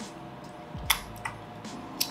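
Quiet room tone with a few faint clicks, one sharper click about a second in.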